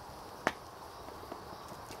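A single short, sharp click about half a second in, over a faint steady outdoor background.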